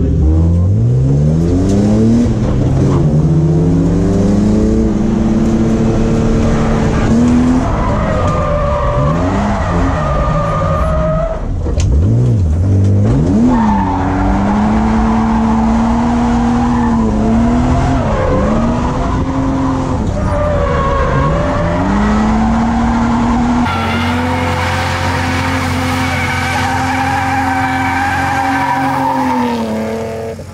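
BMW E36's M52 straight-six being driven hard in a drift, its engine note rising and falling over and over, with tyre screech, heard from inside the cabin. About 24 s in the sound changes abruptly to a steadier, higher-held engine note.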